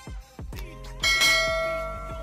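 Bell chime sound effect from a subscribe-button animation, struck about a second in and ringing on as it slowly fades, over background music.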